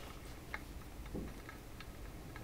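Quiet room tone with a low hum and faint sharp ticks, the clearest about one second apart.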